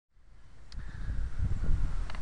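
Wind buffeting the microphone in an irregular low rumble that fades in from silence and grows louder, with a faint thin tone drifting slightly down in pitch and a single click early on.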